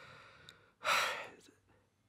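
A man's short, audible breath about a second in, lasting about half a second, with a faint click just before it.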